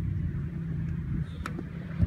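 Steady low outdoor rumble with one sharp knock about one and a half seconds in, typical of a soccer ball being kicked during shooting practice.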